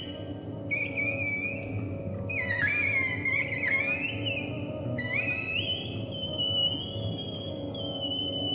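Live band recording of an improvised saxophone solo. A high, piercing lead line bends and slides up and down in pitch, then settles into a long held note over a steady band backdrop.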